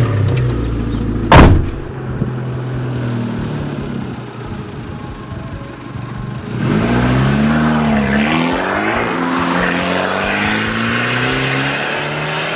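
Abarth 500C esseesse's 1.4 turbo four-cylinder engine running steadily at low revs, with one loud thump about a second and a half in. About halfway through the engine gets louder, its pitch dipping and rising again as it accelerates.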